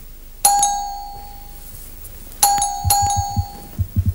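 Doorbell chiming: one ding about half a second in that rings on for about a second, then two more dings in quick succession about two and a half seconds in. A few low thumps follow near the end.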